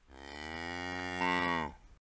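One long cow moo, growing louder in its last half second before stopping.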